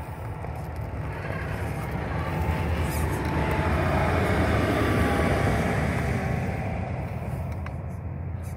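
Redcat Gen8 RC crawler's tyres crunching and churning through loose gravel as it climbs a steep pile, with its drivetrain running. The sound swells louder through the middle and eases off near the end.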